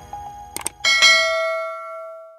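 A quick double click just after half a second in, then a bright bell chime at about one second that rings on and fades slowly: a notification-bell sound effect.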